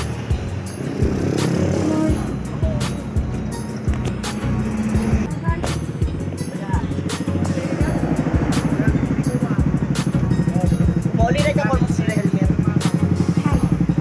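Background music with a steady beat over a motor scooter's small engine idling close by. The engine grows louder from about halfway through.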